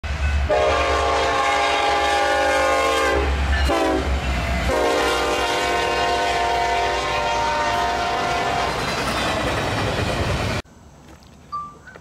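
Locomotive air horn sounding two long chord blasts over the rumble of a passing train. The horn dips in pitch between the blasts, and the sound cuts off abruptly near the end.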